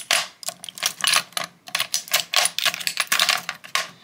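Glass perfume bottles clinking and tapping against each other and against a mirrored glass tray as they are moved around: a quick, irregular run of sharp clicks.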